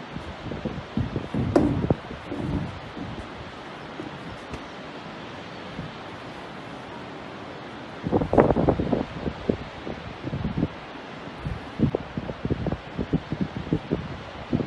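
Wind buffeting a phone's microphone in irregular gusts, over a steady rushing hiss of open-air noise. The loudest buffets come about a second in and again from about eight seconds in.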